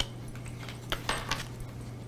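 Tarot cards being handled in the hands and dealt onto the table: a few crisp card snaps, one at the start and a quick cluster about a second in.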